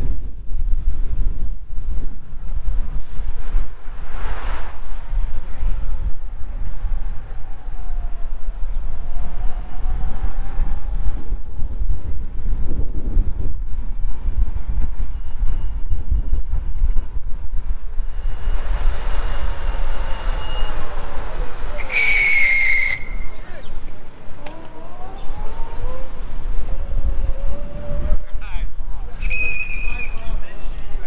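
Wind buffeting the microphone of a camera moving along a city street, a steady low rumble with street traffic under it. A short, high whistle-like tone sounds for about a second around two-thirds of the way through, and briefly again near the end.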